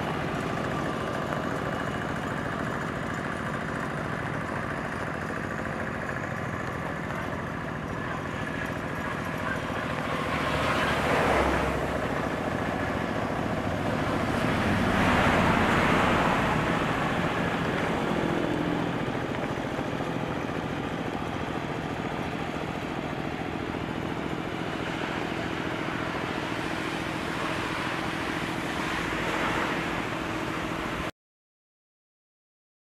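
Two-wheel hand tractor's engine running steadily under load, pulling a rider-mounted soil-crushing implement through flooded paddy mud. The sound swells louder twice, about a third of the way in and again around halfway through.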